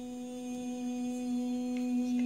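A woman's voice toning: one long note held at a steady pitch, growing a little louder toward the end.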